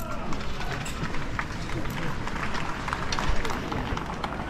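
Murmur of voices from a gathered crowd and band, with scattered footsteps and small knocks on pavement.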